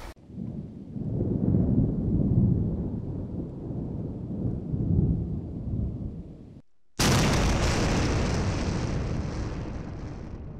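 Cinematic outro sound effects: a low rumbling for about six and a half seconds, a brief dropout, then a sudden loud explosion-like blast about seven seconds in that slowly fades.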